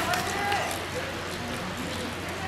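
Indistinct background voices from the trackside, with a few short faint calls, over a steady low hum.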